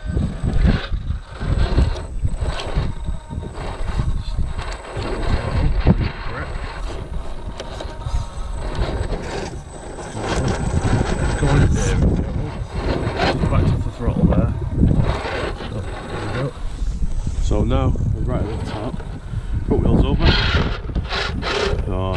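Electric RC rock crawler climbing a steep rock, its motor and drivetrain whirring in short blips of throttle, with tyres scrabbling and knocking on the stone. Wind rumbles on the microphone.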